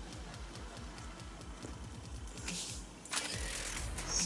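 Hands being wiped with a tissue or wet wipe: faint rubbing and rustling with fine rapid ticking, becoming louder and more rustly for the last second.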